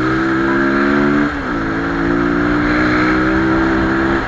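Motorcycle engine and exhaust running at steady revs while riding, with a brief dip in pitch a little over a second in before it holds steady again.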